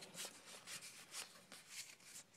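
Pokémon trading cards sliding against one another as they are moved through the hands, a run of faint, quick swishes.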